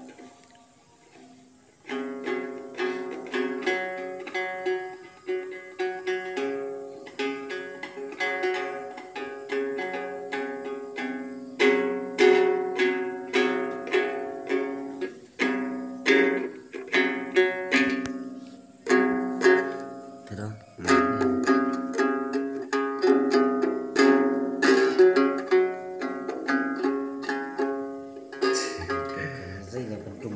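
Đàn tính, the Tày three-string lute with a dried-gourd body, plucked in quick runs of notes starting about two seconds in, with a few short breaks. It is played by someone who doesn't really know how to play it, only sounding it out to show its tone.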